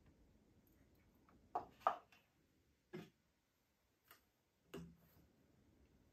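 Faint handling sounds: a handful of short, separate plastic clicks and taps spread over several seconds. They come from a plastic fermenting bucket's lid and airlock as water is added to the airlock and the lid is handled.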